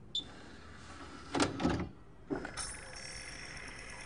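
Stereo CD tray sliding shut and loading a disc: a small click, then two short clunks of the mechanism, followed by a faint steady high whine as the disc spins up.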